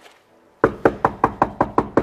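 Rapid knocking on a heavy studded wooden door, about five even knocks a second, starting about half a second in.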